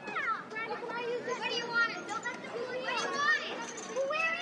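Several high-pitched voices calling and squealing over one another, with no music.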